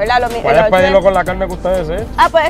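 A person talking continuously over background music.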